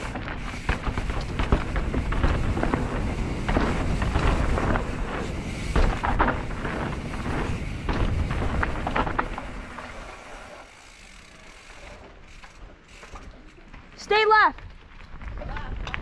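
Full-suspension mountain bike rolling fast down rough dirt singletrack: tyre noise over dirt and rocks with frequent knocks and rattles, and wind on the helmet-camera microphone, easing to a quieter roll about ten seconds in. A short high-pitched wavering sound comes near the end.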